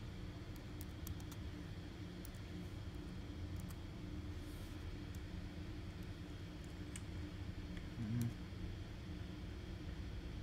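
Scattered single clicks of computer keyboard keys as a command is typed and entered, over a steady low hum.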